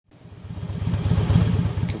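Harley-Davidson touring motorcycle's V-twin engine running with wind rush, fading in from silence over the first second.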